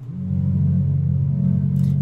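B minor triad played back on a software synthesizer, held as one sustained, low-pitched chord that starts just after the beginning and rings steadily; it sits kind of low, an octave below where the producer wants it.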